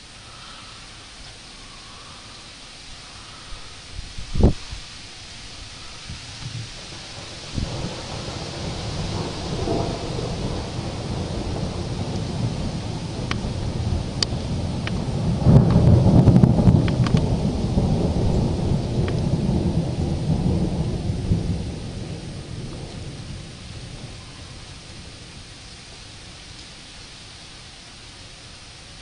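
Thunder rolling: a long low rumble builds from about eight seconds in, is loudest for several seconds in the middle, then fades away, over a steady hiss of rain. A sharp thump comes about four seconds in.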